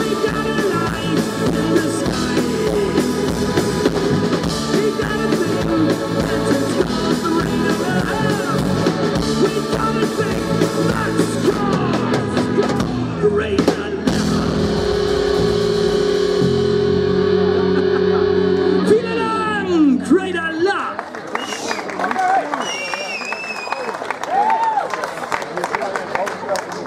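Live rock band with electric guitar, bass guitar and drum kit playing the close of a song: the full band plays for about half the time, then a chord is held and rings out for several seconds before breaking off about three-quarters of the way through, after which voices take over.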